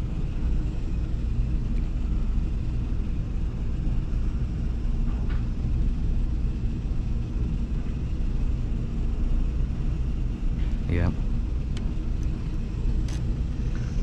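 A steady low rumble, with a few faint clicks as wires and wire nuts are handled in an electrical junction box.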